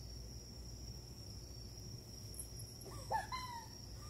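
Crickets trilling steadily at one high pitch over a low outdoor hum, with a short burst of a person's voice about three seconds in.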